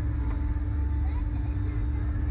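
A steady low rumble with a constant hum running under it, and faint voices in the background.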